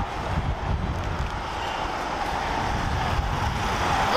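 Street traffic noise, a steady rumble of road vehicles, with wind buffeting the microphone.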